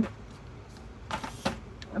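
Makeup items being handled and picked out of a metal bowl: a brief rustling scrape about a second in, with a few light clicks.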